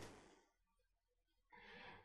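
Near silence: room tone in a pause between sentences, with a faint intake of breath in the last half second.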